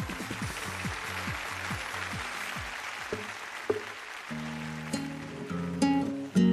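Audience applause over a repeated falling tone, then acoustic guitar chords start ringing about four seconds in.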